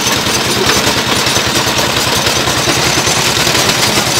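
A small engine running steadily with a fast, even chugging of about a dozen beats a second.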